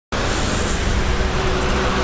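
Road traffic noise: a steady rumble and hiss from passing cars and trucks.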